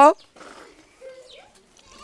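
A woman's speech breaks off, then a faint, short animal call rises in pitch about a second in.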